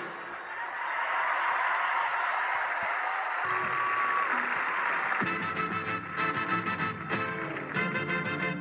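Studio audience cheering and applauding for about five seconds, then samba music from the band starts up.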